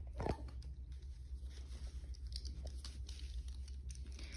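Schnauzer puppies chewing and tugging at plush toys: scattered small clicks, rustles and mouthing noises, with one short, stronger sound just after the start.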